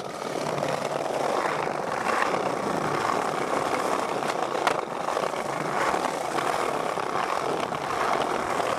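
Skateboard wheels rolling over brick and concrete paving, a steady rumbling roll with one sharp clack a little before five seconds in.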